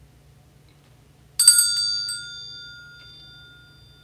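Small metal altar bell rung briefly: a few quick strikes about a second and a half in, then a high, clear ring that fades over about two seconds.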